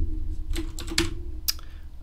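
Typing on a computer keyboard: a handful of separate keystrokes entering a terminal command, over a steady low hum.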